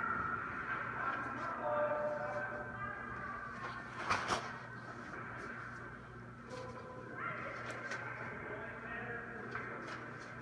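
Echoing ice-rink ambience: distant voices over a steady low hum, with one sharp crack of a hockey stick striking a puck about four seconds in.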